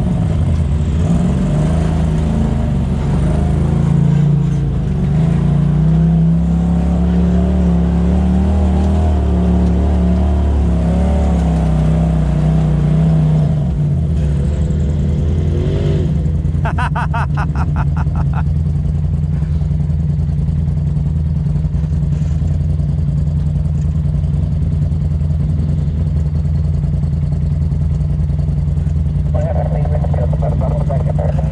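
Polaris RZR side-by-side engine running at low speed while crawling a rocky trail, its note wavering with the throttle and easing down about 13 seconds in. A brief run of rapid, even clicking comes a few seconds later.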